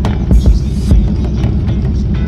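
Motorcycle engines running low and throbbing as bikes ride slowly past, with music playing over them and a few short sharp noises.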